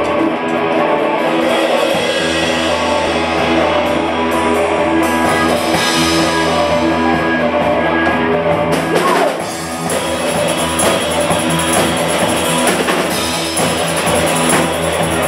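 A rock band playing live: electric guitars over a drum kit, a loud, steady instrumental passage.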